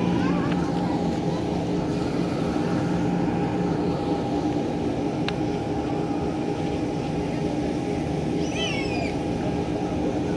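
Electric blower fan inflating a giant inflatable dinosaur, running with a steady droning hum.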